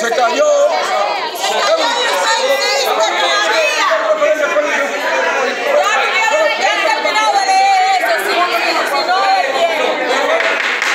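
Many voices talking over one another in a large hall, a loud, continuous jumble of overlapping speech among council members arguing.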